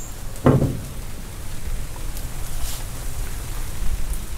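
A steady, even hiss with a low hum underneath, and a short voice sound about half a second in.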